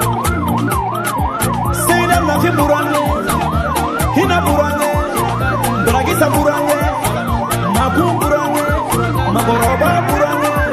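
A siren sweeping rapidly up and down, about three sweeps a second, over music with a steady beat and bass notes.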